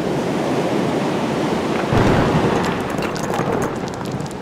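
A storm-and-battle sound effect: a dense rushing noise that swells in, with a heavier low rumbling boom about two seconds in, then slowly fades.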